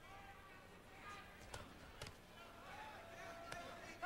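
Faint voices and shouts of an arena crowd, with three sharp thuds of boxing gloves landing, about a second and a half in, at two seconds and near the end.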